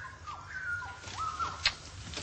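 Birds chirping in the background: a few thin whistled calls that glide up and down, with one short click about one and a half seconds in.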